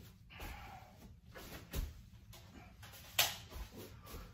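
Paintbrush swishing across a painted wall, then two knocks: a softer one a little under two seconds in and a sharp, louder one about three seconds in.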